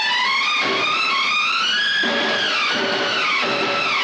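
Bollywood film-song music with a dance beat. A melody line climbs for about two seconds and then comes back down.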